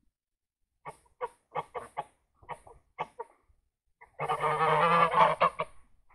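Domestic geese honking: a run of short honks, then a loud, drawn-out call lasting about a second and a half near the end.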